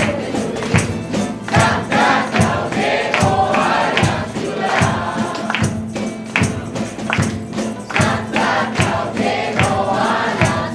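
Folk ensemble playing a Christmas carol on guitars and lutes, with group singing and hand clapping on a steady beat of a little over one beat a second.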